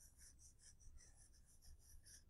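Faint, quick back-and-forth scratching of a crayon colouring in a patch on sketchbook paper, about six strokes a second.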